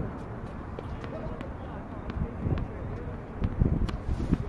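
A tennis ball bounced on a hard court before a serve: a few sharp, separate knocks over a murmur of indistinct voices.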